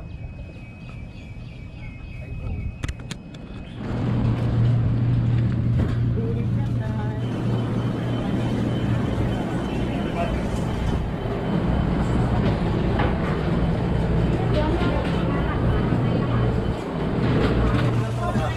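Seafood market ambience: from about four seconds in, a steady low machine hum with voices and clatter around it. Before that, quieter open-air background with a few sharp clicks.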